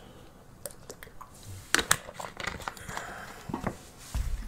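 Plastic water bottle being drunk from and handled: a scatter of small crinkles and clicks, the loudest a little under two seconds in.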